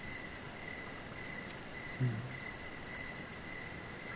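Faint steady high-pitched chirring of insects in the background, typical of crickets, with one brief low sound about halfway through.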